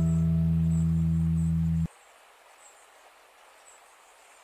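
Final chord of an acoustic guitar ringing out, held steady and then cut off suddenly about two seconds in. Afterwards only faint background hiss with faint high chirps.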